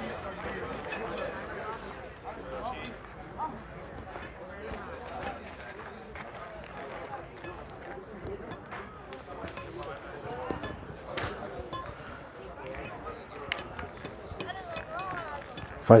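Low background murmur of voices, with scattered short sharp clicks of steel petanque boules knocking together.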